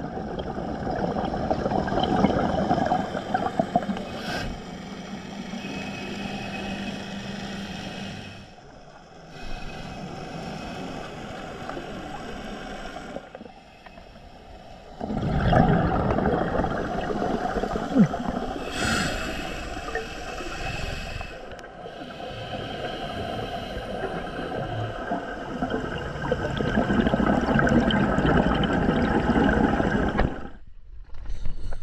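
Scuba regulator breathing heard underwater on the camera: rushing bubble noise from exhalations that swells and fades in long breaths, with two quieter pauses and a strong surge about halfway through.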